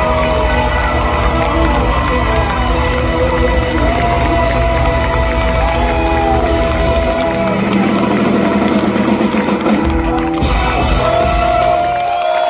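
Live band with saxophones, keyboards, electric guitars and drums playing a song. The bass and low end drop out for about three seconds partway through, then come back in.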